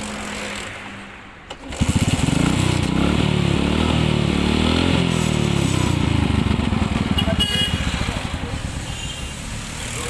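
LML NV four-stroke scooter's single-cylinder engine starting up about two seconds in and running, its revs rising and then settling back. It starts cleanly now that the faulty wiring coupler connection has been put right.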